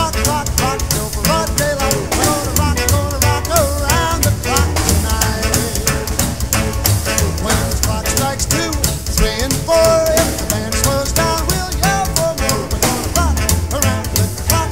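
Rock and roll band playing an instrumental break: a saxophone leads over electric guitars, electric bass and a steady drum backbeat.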